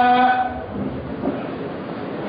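A man's melodic Qur'anic recitation: a long held note ends about half a second in, leaving steady background hiss.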